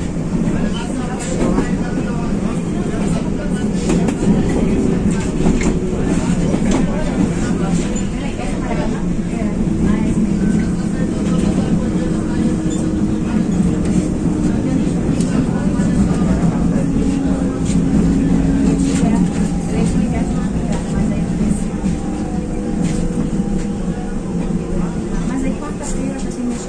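Steady running noise inside the cabin of a moving electric suburban train, with a faint drawn-out hum that slides slowly in pitch and scattered clicks from the running gear.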